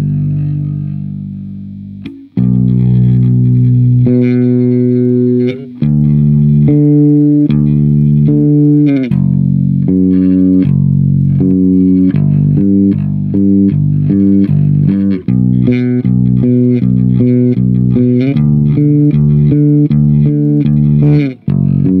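Four-string electric bass guitar played solo and plucked: the opening of a song's bass line. A long note rings and fades for the first two seconds, then a steady line of notes follows, moving to quicker, shorter notes in the second half.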